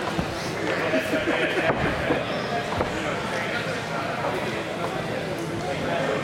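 Indistinct background chatter: several people's voices talking at once, with no clear words.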